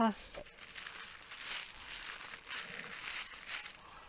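Packing material and wrapping being handled by hand during an unboxing: an irregular, fairly faint crinkling and rustling.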